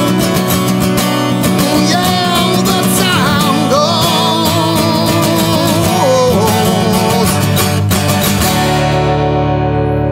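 A man singing over a strummed acoustic guitar. About eight and a half seconds in, the strumming and singing stop and the song's final chord is left ringing.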